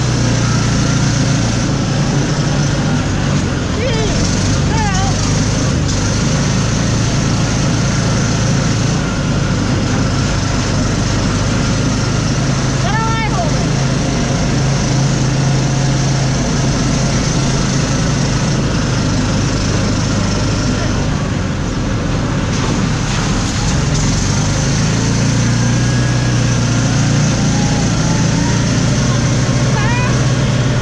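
Open off-road vehicle's engine running steadily as it drives along a dirt track, a continuous low drone with road noise. There are brief whistle-like rising and falling glides about four and thirteen seconds in.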